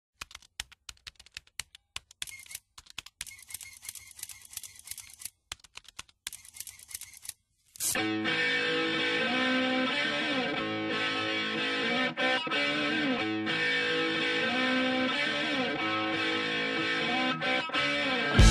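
Scattered sharp clicks and crackles for about seven seconds. Then music comes in: a sustained electric guitar intro with effects, its notes shifting slowly.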